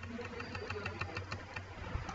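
Computer keyboard keys tapped in quick succession, faint clicks about seven or eight a second, over a steady low hum.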